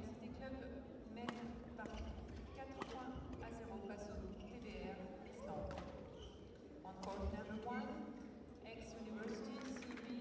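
Sports hall background: faint, overlapping chatter of distant voices in a large echoing hall, with a few sharp knocks or clicks.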